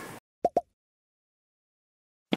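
Two quick pops, about a tenth of a second apart, from the sound effect of an on-screen like-and-subscribe button animation. Just before them the room sound cuts off suddenly into silence.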